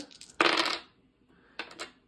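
A small die rolled onto a hard desktop: a short clatter about half a second in, then a few light clicks near the end as it settles or is picked up.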